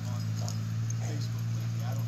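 A dog whining in a few short, rising-and-falling whimpers, over a steady low hum.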